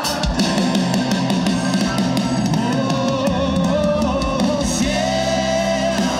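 A live rock band playing: drum kit and guitar with singing, at a steady loud level.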